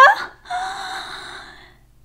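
Speech breaks off, then a short breathy gasp-like sound from a woman's voice fades away over about a second.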